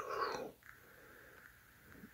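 A person's brief, low, creaky voice sound that fades out within about half a second, then near silence: room tone.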